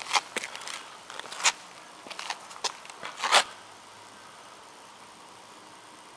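Footsteps scuffing on gritty pavement: about six uneven steps in the first three and a half seconds, then they stop.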